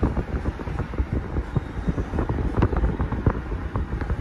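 Car cabin noise while driving slowly: a low rumble of engine and tyres, with frequent small clicks and knocks.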